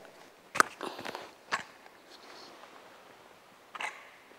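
Camera tripod legs being set out: a few sharp clicks and knocks from the leg locks and joints, the two loudest about a second apart early on, and one more near the end.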